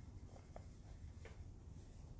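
Near silence: faint low room hum with a few soft, short scratchy clicks.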